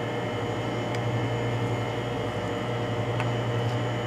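Steady low machine hum over an even hiss, with two faint ticks, one about a second in and one after three seconds.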